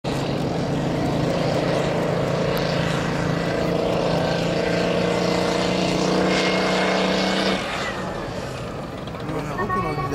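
Type 87 self-propelled anti-aircraft gun's diesel engine running with a steady, pitched drone as the tracked vehicle drives, dropping away abruptly about three quarters through. A loudspeaker announcer's voice starts near the end.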